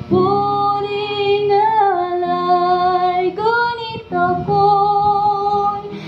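A woman singing a slow song in long held notes, her voice sliding between pitches, over her own strummed acoustic guitar.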